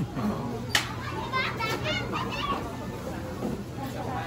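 A young child whining in a high, wavering voice, with a single sharp click under a second in and a steady low hum underneath.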